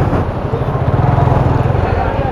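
Suzuki Gixxer's single-cylinder engine running as the bike is ridden slowly through a cone course, with a rapid, even putter of firing pulses.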